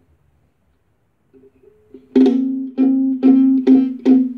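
Ukulele played by hand: a few soft plucked notes, then, from about two seconds in, loud strums of the same chord about half a second apart, each left to ring.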